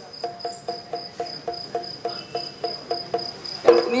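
Yakshagana maddale barrel drum played in a steady rhythm of short, soft pitched strokes, about four a second, over a steady high-pitched tone.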